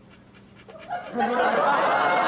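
Sitcom audience laughter on the laugh track, low at first and swelling sharply a little over a second in.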